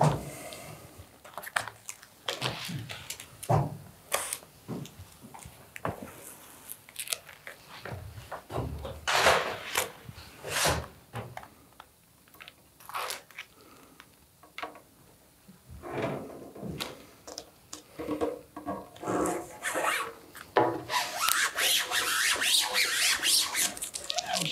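Vinyl stencil and transfer film being handled and rubbed down by hand and plastic squeegee on a clear-coated carbon rear spoiler: irregular rubbing, scraping and crinkling, busier in the last few seconds.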